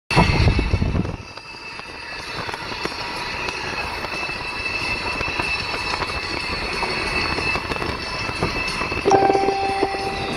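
Road and tyre noise inside a moving car, running steadily, with a loud low rumble in the first second. About a second before the end a held tone comes in over it.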